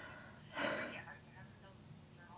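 A woman's short breathy laugh about half a second in, with a soft "yeah", then faint talk.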